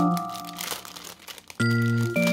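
Clear plastic bag crinkling as it is handled, heard under background music that fades out early and comes back loudly about one and a half seconds in.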